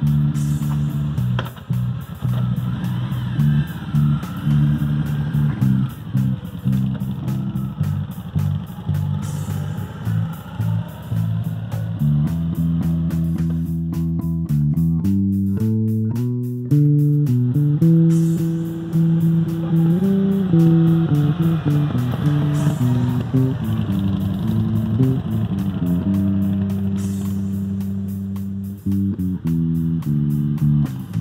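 Electric bass guitar playing a free-form bass line in A, single low notes changing every fraction of a second.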